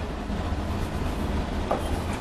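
Steady low background hum of the room, with faint scratches of chalk on a blackboard as a new line is written.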